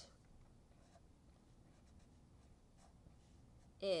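Felt-tip marker writing on paper: a few faint strokes.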